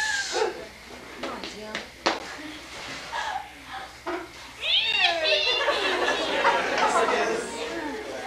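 Voices of a small group in a room, with a couple of sharp knocks in the first half, then a burst of high squealing voices about five seconds in that runs on into overlapping chatter.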